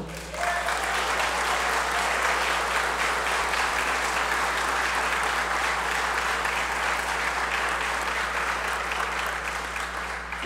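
Audience applauding in a steady, sustained round that begins just after the start and eases slightly near the end.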